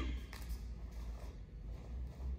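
Faint rustle of martial-arts uniforms and bare feet moving on foam floor mats during a step back with a block and punch, with a soft click about a third of a second in, over a low steady hum.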